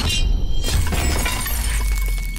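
Designed sound effect of glass shattering over a deep, sustained bass rumble. It opens with a bright ringing shimmer, and a dense crackle of breaking shards follows from about half a second in.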